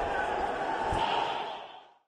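Several men shouting over one another in a confused commotion during a brawl between futsal players, fading out near the end.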